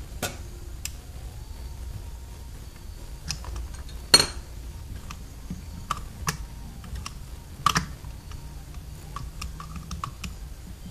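Scattered sharp metallic clicks and taps as a Holley carburetor's accelerator pump linkage is handled and adjusted by hand. The loudest click comes about four seconds in, over a low steady hum.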